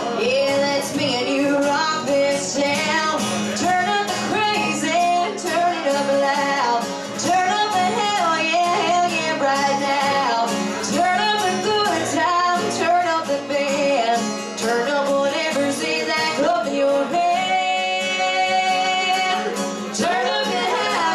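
Live acoustic music: two women singing into microphones over a strummed acoustic guitar.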